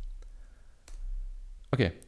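A single sharp computer keyboard key click just under a second in, the key press that runs the script, with a fainter click before it.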